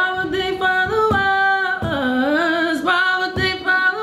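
Music: a sung vocal sample in a hip-hop beat being built, with long held notes that slide up and down in pitch and a few light percussive knocks.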